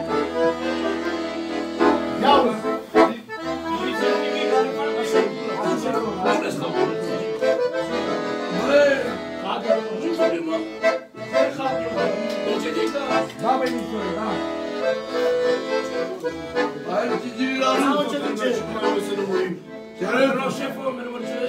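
Piano accordion playing a tune, with held chords over low bass notes that come and go, and a brief break about eleven seconds in.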